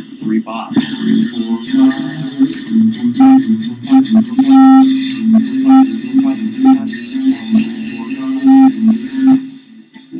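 Electric guitar playing a quick, continuous stream of single notes in F-sharp, an improvised practice line moving between target notes.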